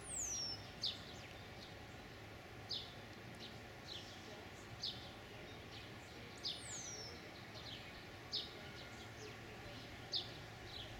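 Songbirds calling: short high chirps repeated every second or two, and twice a thin whistle sliding down in pitch, over a steady faint outdoor hiss.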